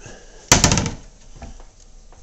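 Wooden kitchen cabinet door being opened by hand, giving a sharp double knock about half a second in.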